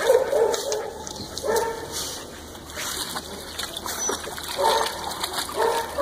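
Several dogs playing, with short pitched vocalizations coming now and then, about four times.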